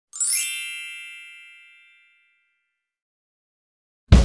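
A bright chime sound effect: a quick rising shimmer into a single ringing ding that fades away over about two seconds.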